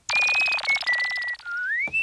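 A high, rapidly warbling whistle-like tone that steps down in pitch over a few notes, then slides smoothly upward near the end: a cartoon sound effect or music cue.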